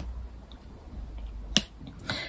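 A single sharp click about one and a half seconds in, over a faint low background rumble.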